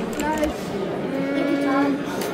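A person's voice: a brief vocal sound, then a drawn-out vocal sound held on one pitch for about a second.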